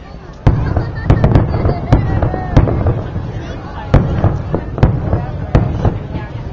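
Aerial fireworks shells bursting in a series of about nine sharp, loud bangs. The first comes about half a second in, three follow in quick succession about a second in, and the rest are spaced about a second apart to near the end.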